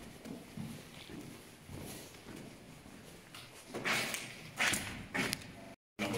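Footsteps scuffing on a concrete tunnel floor, faint at first, with a few louder scuffs about four and five seconds in.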